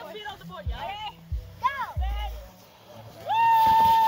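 Children's short high voices calling out, with a few low thumps, then about three seconds in a child's long, steady held yell on one high note.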